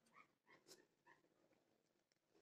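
Near silence, with a few faint short squeaks and one faint sharp click as small pedicure nippers bite into a pigeon's hard metal-and-plastic leg ring.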